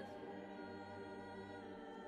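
Background choral music: voices holding long, sustained chords.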